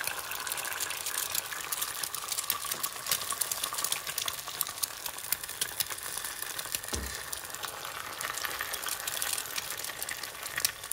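Eggs sizzling in oil in a small cast-iron skillet over a gas flame, a steady hiss thick with small rapid pops. About seven seconds in there is a single soft, low thump.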